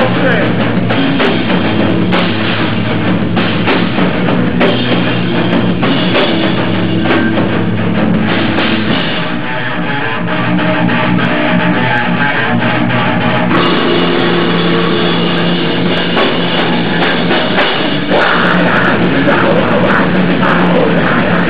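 Rock band playing live without vocals: electric guitar and a drum kit with cymbal hits. The sound thins out slightly through the middle, fills back in, and gets louder near the end.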